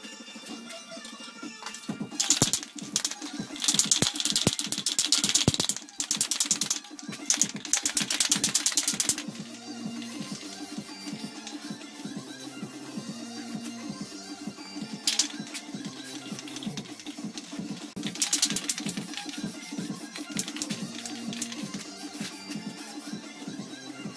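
Radio music played back fast-forwarded, so it sounds sped up and garbled, with several loud bursts of spray-paint can hiss, the strongest in the first third.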